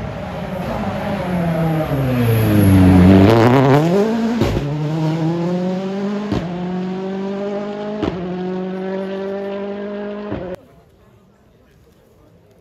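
Rally car engine coming down in revs as it slows through a corner, then accelerating hard away up the gears. There is a gear change about every two seconds, each followed by the revs climbing again. The engine sound cuts off suddenly near the end.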